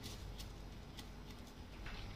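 A few faint clicks of a metal spoon against a plastic measuring jug as salt is tipped into the brine and stirring begins, over a low room hum.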